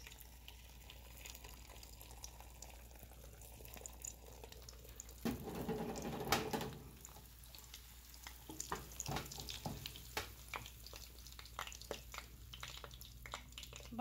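Beaten eggs frying in hot oil in a pan: a soft, faint sizzle, louder for a moment about five to seven seconds in, then scattered crackling pops.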